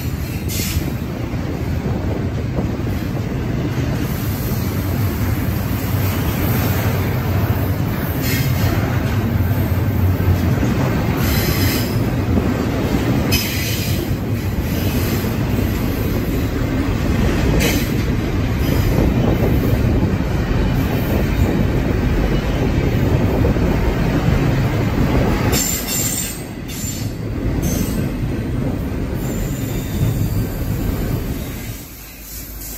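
Double-stack intermodal container train rolling past: a steady rumble of steel wheels on rail, with several brief, higher-pitched bursts of wheel noise. The level dips briefly near the end.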